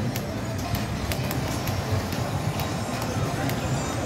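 Casino floor ambience: a steady low hum with indistinct background voices, crossed by sharp ticks a few times a second.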